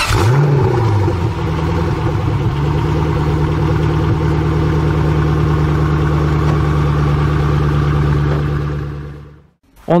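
Car engine sound effect: the engine catches with a brief rev, then idles steadily on a low, even note and fades out about nine seconds in.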